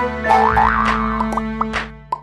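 Cartoon logo sting: upbeat jingle with sound effects, including a rising, wobbling pitch glide about half a second in and a few sharp clicks, fading away near the end.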